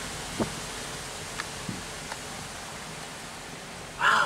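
Steady noise of a Smart car rolling slowly along a gravel road, heard from inside the cabin, with a few faint clicks.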